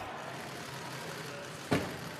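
Steady outdoor street background noise with traffic, broken near the end by a single sharp knock.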